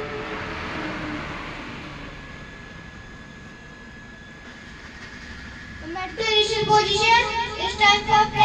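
Low background noise with a faint steady whine for several seconds. About six seconds in, a group of children's voices start a prayer in unison, loud.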